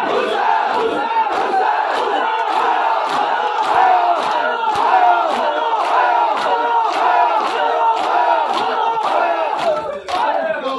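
Large crowd of men shouting and calling out together during matam, over sharp rhythmic chest-beating strikes, a little over two a second.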